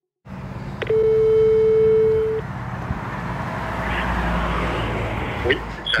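A telephone ringback tone heard through a phone's speaker: a click, then one steady beep lasting about a second and a half, the single 440 Hz ring of a French ringback. Under it runs the low steady hum of a car engine, and the call is answered near the end.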